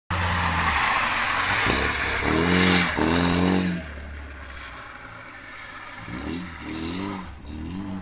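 Rally car engine revving hard through repeated rises in pitch as it accelerates through the gears, loud at first and then more distant from about halfway, with further short bursts of revs near the end.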